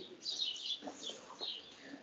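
Faint, short high chirps, three or four of them, over quiet room tone.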